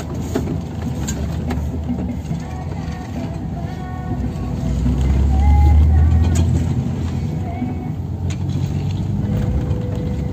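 Car driving along a town street, heard from inside the cabin: a steady low engine and road rumble that swells louder for a couple of seconds midway.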